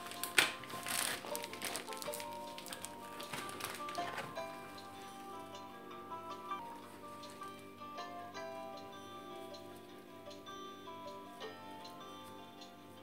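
Background music with steady held notes. Over it, in the first few seconds, come clicks and rustles from hands handling the dry pasta tubes and filling over a metal tray, the loudest a sharp click about half a second in.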